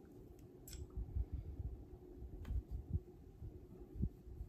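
Quiet handling noise of painting at a tabletop: soft low bumps and a couple of faint light clicks as a paintbrush works alcohol ink over paper, over a faint steady hum.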